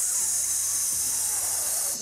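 A woman exhaling in one long, steady hiss through her teeth, a breath-support exercise for training the diaphragm; the hiss stops near the end.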